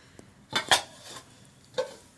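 Metal kitchenware clinking: a metal bowl knocking against a pan or plate by the fire, three sharp clinks, two close together about half a second in and a third near the end.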